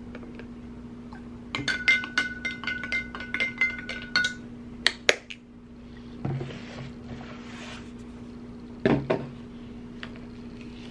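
A plastic spoon clinking quickly against a glass measuring cup holding rubbing alcohol, about four or five strikes a second for a few seconds, with the glass ringing. Then come two sharp clicks, a soft hiss, and a few knocks near the end.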